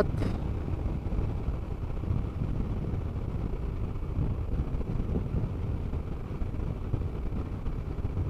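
Honda NC 750X parallel-twin motorcycle riding steadily, heard as a low, even rumble of engine and wind noise.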